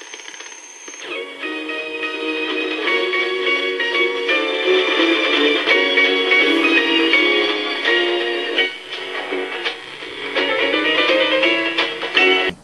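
Music playing back from a cassette on a Sharp RD-426U cassette recorder, heard through its built-in three-inch speaker, thin and without bass. A faint high steady tone comes first, and the music starts about a second in.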